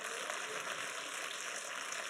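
A congregation clapping steadily, a dense even patter of many hands.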